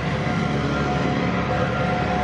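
A steady low mechanical hum with a faint steady tone above it, like an engine or machine running.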